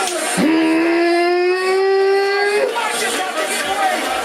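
A person's voice holding one long note that rises slowly in pitch for about two seconds, then breaks off, followed by speech.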